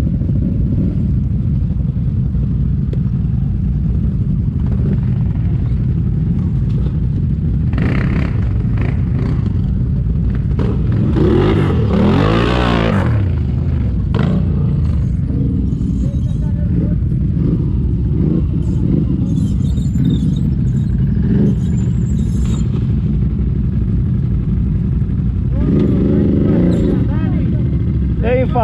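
Quad ATV engines running steadily, with one revving up and back down about halfway through.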